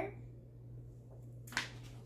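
Quiet room with a low steady hum and one short crisp click-like sound about one and a half seconds in.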